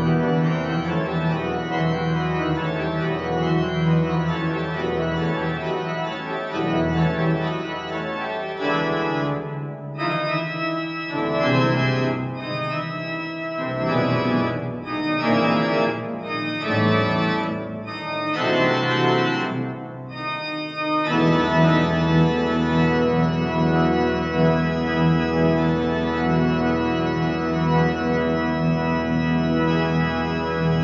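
Church pipe organ playing loud, full chords with deep pedal bass. From about nine seconds in the pedal drops out and short, separated chords alternate with brief gaps, then the full sound with deep bass comes back in about twenty-one seconds in.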